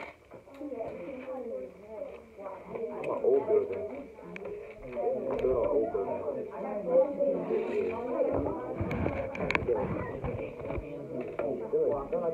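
Indistinct chatter of children's voices, with rubbing and bumping from the phone being handled against clothing about eight to eleven seconds in.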